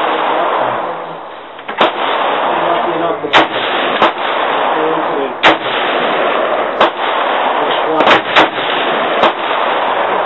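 AR-15 rifle firing single shots, about eight at uneven intervals, two of them close together near the end, each a sharp crack over a steady rushing background noise.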